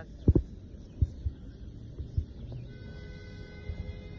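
A few dull low thumps, then background music with steady held tones comes in about three seconds in.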